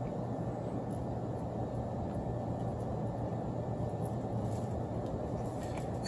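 Steady low hum and rumble of background noise with no distinct events.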